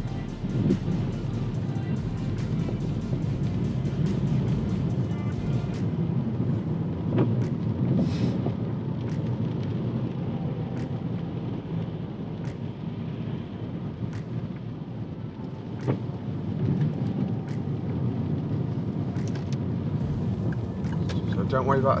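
Car cabin noise while driving slowly on a wet road: a steady low rumble of tyres and engine, with sharp ticks that come rapidly in the first few seconds and then every second or two.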